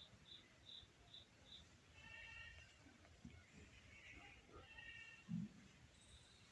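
Near silence with faint animal calls in the background: a quick, evenly spaced run of high chirps in the first second or so, then two brief calls about two and five seconds in. A single short low thump comes just after five seconds.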